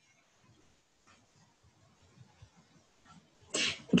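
Near silence: faint room tone in a pause between spoken sentences, with a short breath-like sound and a voice starting to speak again near the end.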